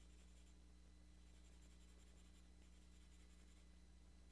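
Faint scratching of a 2B graphite pencil shading on stone paper, with a low steady hum underneath.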